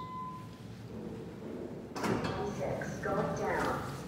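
A steady elevator arrival chime tone ends about half a second in. About two seconds in, a ThyssenKrupp elevator car's stainless-steel doors slide open.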